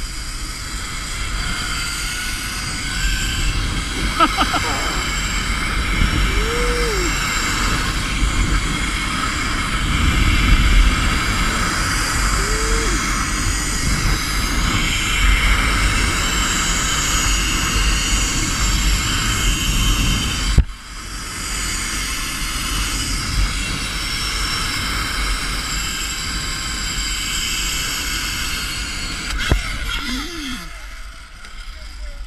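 Zipline trolley pulleys running along the steel cable with a steady whir, mixed with heavy wind rush on the camera microphone during the ride. The sound breaks off briefly about two-thirds of the way through and then resumes.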